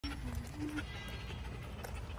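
Three short, pitched, voice-like sounds in the first second, over a steady low rumble of wind and handling noise from a walking handheld microphone.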